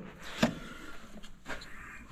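A single sharp click about half a second in, then low handling noise with a fainter click later.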